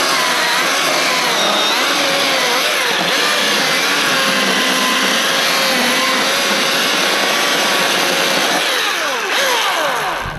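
Milwaukee M18 cordless chainsaw cutting through a log, its electric motor running steadily under load as the chain bites the wood. Near the end the motor's pitch falls as it winds down.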